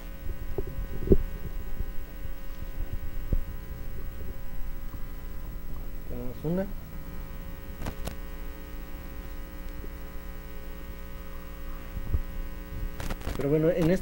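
Steady electrical mains hum on the sound system, running under everything, with a few low thumps from handling the corded microphone in the first seconds and a short voice fragment about six seconds in.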